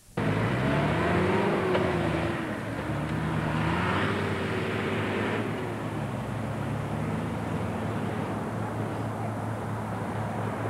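A first-generation Mitsubishi Pajero's engine revving as it drives off across the sand. Its pitch rises and falls twice, then settles to a steadier note that fades slightly as it moves away.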